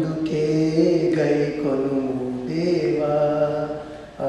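A man's solo voice singing a slow Telugu devotional song into a microphone, holding long notes and gliding between them.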